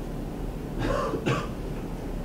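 A man clearing his throat: two short raspy bursts about a second in.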